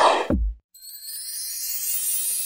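Animated logo sting: a loud whoosh that drops into a deep falling boom about half a second in, then, after a brief gap, a rising sparkly shimmer.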